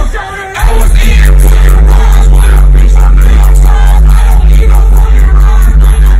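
Live hip-hop played very loud through a festival sound system, with vocals over it. The music dips briefly at the start, then a heavy, sustained bass comes back in about a second in.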